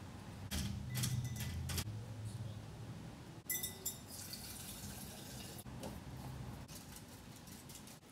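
Water being poured into a glass as mineral supplements are mixed into it. A few light clicks come about a second in, and a brief louder rush of liquid about three and a half seconds in.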